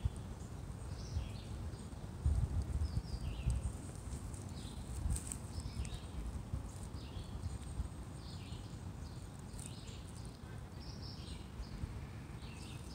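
Small birds chirping in the background, short high notes repeated throughout, over a low rumbling noise on the phone microphone that swells a couple of seconds in.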